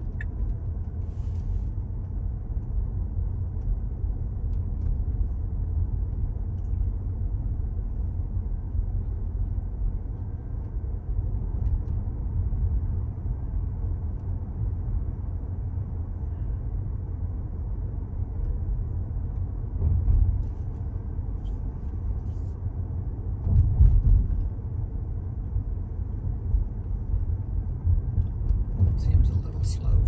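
Tyre and road rumble heard inside the cabin of a Tesla electric car cruising, low and steady with no engine note. It swells louder twice, around twenty seconds in and again a few seconds later.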